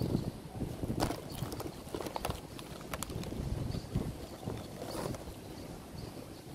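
Outdoor background noise: a low, uneven rumble with a few sharp clicks scattered through it.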